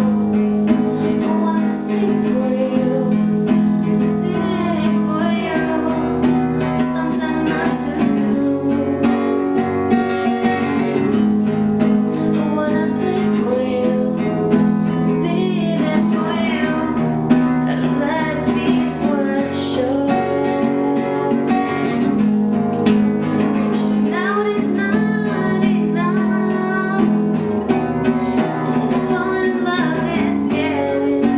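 Acoustic guitar strummed steadily under a woman singing, with a slight echo from a bathroom's hard walls.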